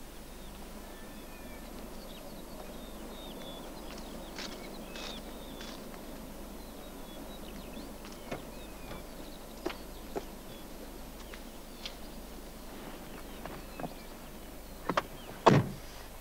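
Steady outdoor ambience with scattered short high chirps and light clicks; about a second before the end, a car door is handled and shut with a couple of sharp knocks and a loud thump.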